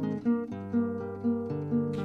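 Acoustic guitar music: plucked and strummed notes, with a new note or chord every half second or so.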